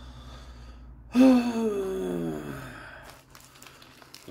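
A man's long voiced sigh, about a second in, falling steadily in pitch as it fades. Near the end come a few light crinkles of the burger's paper wrapper.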